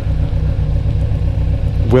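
Motorcycle engine idling steadily, with a low, evenly pulsing note.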